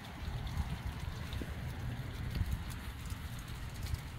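Steady rain falling on umbrellas and wet ground, a hiss with many small drop ticks over a low rumble, with footsteps of people walking.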